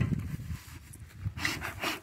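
Dry pine straw rustling as it is pushed into a bee smoker, then a few short puffs of air from the smoker's bellows near the end.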